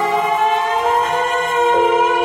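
Live performance of a Vietnamese ballad by a small band: a long held note that slides slowly upward over a thin keyboard backing, the bass dropping away as it begins.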